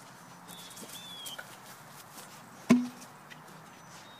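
A single sharp knock with a brief low ring, about two and a half seconds in. Faint high chirps come about a second in.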